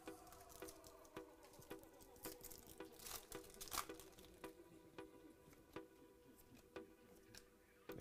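Faint tearing and crinkling of a trading-card pack wrapper being ripped open, loudest about three seconds in, over quiet background music with a steady beat.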